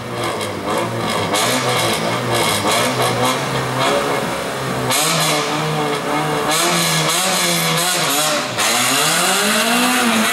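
Renault Clio race car's engine revving in repeated throttle blips at the start line. The revs then swing higher and lower, climbing sharply about a second and a half before the end.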